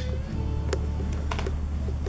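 A few light clicks and taps as collagen cubes are set into a clear plastic container, over steady background music.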